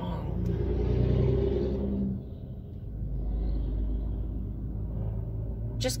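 Car engine and road rumble heard from inside the cabin, a steady low drone that eases a little about two seconds in.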